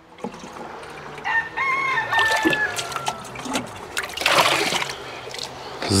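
A rooster crows once, a call of about two seconds starting just over a second in. Water splashes and gurgles as a plastic watering can is dipped into a water tub and filled, loudest about four seconds in.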